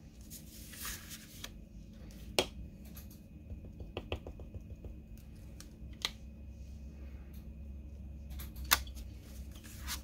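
Clear acrylic stamp block tapped on an ink pad and set down on cardstock: a few sharp taps, the loudest about two and a half seconds in and again near the end, with light paper and hand handling between them over a steady low hum.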